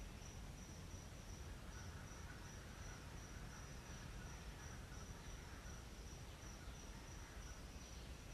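Faint insect trilling: a steady high-pitched note broken into rapid regular pulses, over a low background rumble.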